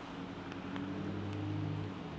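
A vehicle engine running close by, its low hum swelling through the second half and then easing, over a steady hiss.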